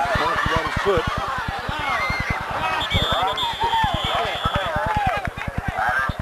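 Indistinct voices talking over one another, with no clear words, over a rapid, even low pulsing. A thin, steady high tone sounds from about three seconds in until nearly five seconds.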